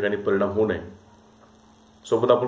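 A man's lecturing voice stops about a second in, leaving a faint, steady electrical mains hum.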